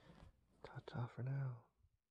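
A man's voice speaking a few quiet words, starting about half a second in and ending about a second and a half in.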